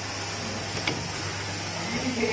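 Paper cup screen printing machine running with a steady low hum, and a single sharp click about a second in.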